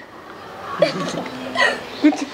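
Short, indistinct vocal reactions from people in the group: brief utterances and a short held voice sound, rather than clear words.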